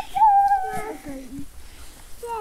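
A young child's voice calling out as they run: one long high held call, then a few short lower sounds.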